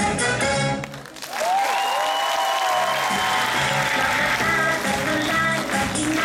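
Upbeat dance music with a steady beat breaks off about a second in; audience applause with a drawn-out cheer fills the gap, and the beat comes back in at about three seconds under continuing applause.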